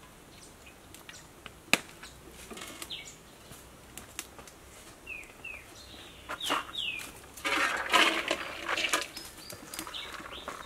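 Small birds chirping in short downward-sliding calls, with a sharp click a little under two seconds in. Near the end comes a louder rush of noise lasting about a second and a half as food is tipped from a plastic bowl into a hot wok.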